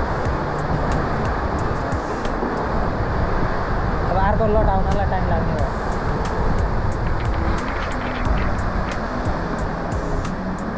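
Sea waves surging through a sea cave and washing up over sand and pebbles, a steady rushing wash of water, with a voice heard briefly about four seconds in.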